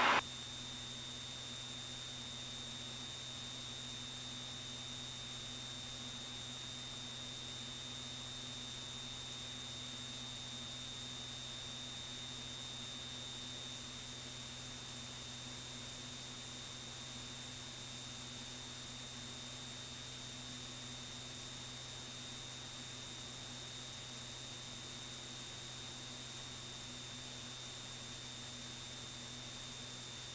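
Steady low drone with an even hiss and a constant high-pitched whine inside the cockpit of a Piper PA-46 in flight, unchanging throughout.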